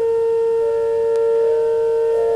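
Organ music: slow, sustained chords, with one low note held throughout while higher notes change about halfway through.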